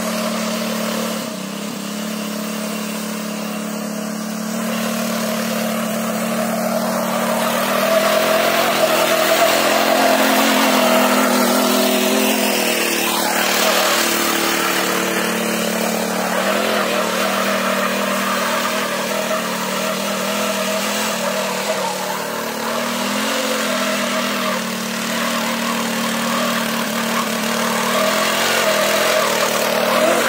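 Small petrol engine of a single-wheel mini weeder running under load while its rotary tines churn through soil. The engine note stays steady throughout, growing a little louder for a few seconds about a third of the way in.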